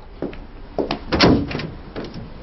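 An office door being handled and opened, a few short knocks and clunks, the loudest a heavier thump a little past the middle.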